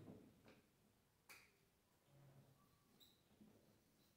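Near silence, with a few faint ticks of a marker writing on a whiteboard.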